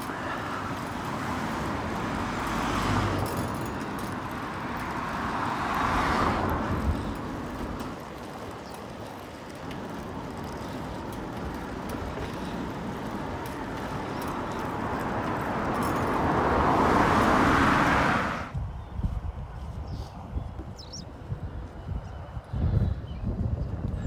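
Traffic noise heard from a moving bicycle: cars pass one after another, each swelling and fading, over a steady rush of riding noise. About three-quarters of the way through the sound cuts off abruptly, and only quieter, irregular low buffeting follows.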